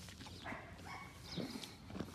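A yearling colt's head brushing against the phone, with faint snuffling and rubbing close to the microphone. A faint short animal call sounds in the background about half a second in.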